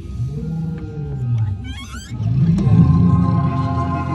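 Spooky sound effects from Halloween decorations: deep growling monster sounds over eerie music, with a brief high squeal about halfway through.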